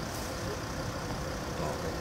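A vehicle engine running with a steady low rumble.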